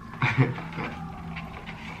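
A brief vocal sound from one of the people eating about a quarter second in, then low room tone with a faint steady hum.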